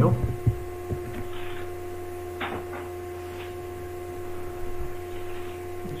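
Steady electrical hum, with a few faint short clicks or rustles scattered through it, the clearest about two and a half seconds in.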